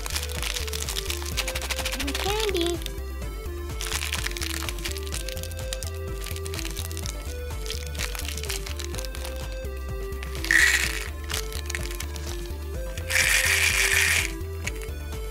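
A thin plastic candy wrapper crinkling and crackling as it is pulled open by hand, over background music with a steady beat. Near the end, small hard candies rattle out into a plastic egg half.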